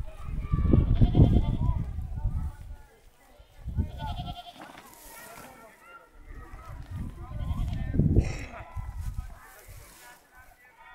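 Young goat kids bleating in short, high calls, twice or so, over stretches of loud low rumbling noise.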